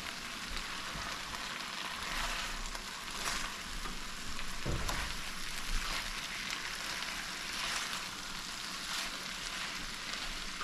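Okra and saltfish sizzling steadily in an enamelled pan and being stirred with a silicone spatula. The sizzle swells each time the food is turned.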